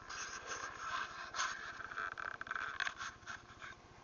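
Rustling and scraping of brush and twigs against clothing and the camera as the wearer pushes through forest undergrowth: a run of irregular scratchy bursts that stops shortly before the end.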